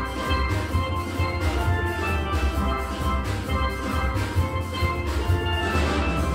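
Steel band playing a tune on an ensemble of steel pans, with rapidly repeated mallet strikes on ringing pitched notes over a low bass line.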